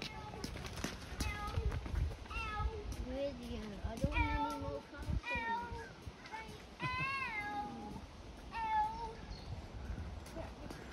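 A young child's high, wordless whining: a string of short cries whose pitch rises and falls, the longest about seven seconds in.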